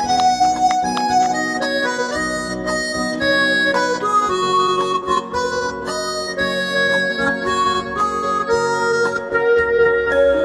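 Saxophone playing a melody of held and moving notes over a band accompaniment.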